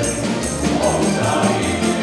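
Male vocal ensemble singing a Serbian folk song to an acoustic guitar strummed in a steady rhythm.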